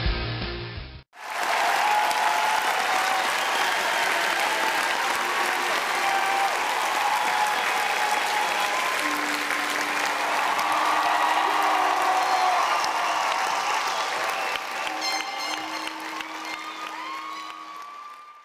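A rock track cuts off about a second in, and steady applause follows, with a few held musical notes beneath it; the applause fades out at the end.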